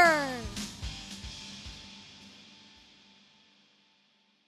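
A synthesized intro stinger: a tone slides down in pitch and ends about half a second in, followed by low drum hits that fade away over the next two seconds into silence.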